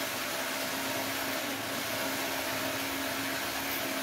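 Electric hammer drill boring a 6 mm hole into a plastered masonry wall. The motor runs at a steady speed, with an even grinding noise and a constant hum.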